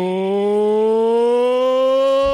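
A single sustained synthesizer note in a happy hardcore track, bright and buzzy. It swoops up sharply at its start, then climbs slowly and steadily in pitch, with no beat under it.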